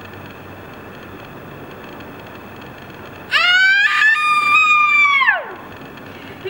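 A woman's high-pitched scream, rising into a held note for about two seconds and then falling away. It comes a little past halfway through, after steady outdoor background noise.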